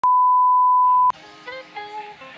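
Steady, loud test-pattern beep of the kind played over TV colour bars, one unwavering high tone lasting about a second and cutting off suddenly. Light background music with plucked notes starts right after it.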